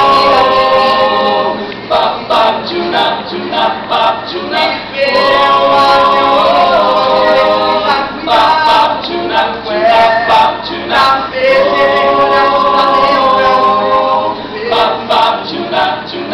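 Mixed-voice a cappella vocal jazz ensemble singing in close harmony. Held chords near the start, around the middle and again later alternate with short, rhythmic sung syllables in between.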